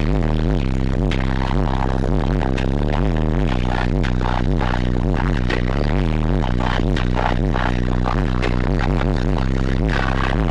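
Loud bass-heavy electronic music played through a competition car-audio subwoofer system, heard from inside the car, with a steady deep bass line and no breaks.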